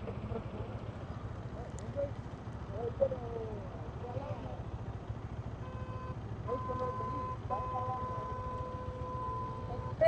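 Motorcycle engines idling with a steady low rumble, with faint voices in the background. From about six seconds in, a steady high tone is held to the end, briefly breaking once.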